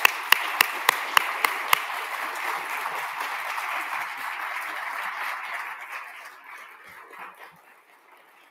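Audience applause: a room full of people clapping. It fades out over the last few seconds. For the first two seconds, one person's claps close to the microphone sound out sharply above the rest, about three a second.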